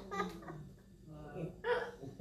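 Soft laughter: a few short chuckles.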